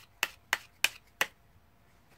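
A few playing cards held and snapped hard, about five sharp snaps in quick succession that stop a little over a second in. It is a fake shuffle sound, meant to pass for shuffling cards.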